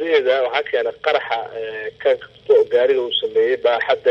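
Speech only: a person speaking in Somali, without pause.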